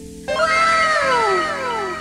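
A meow-like sound effect: a long glide that rises briefly and then falls slowly in pitch, starting a moment in and fading near the end, over steady background music.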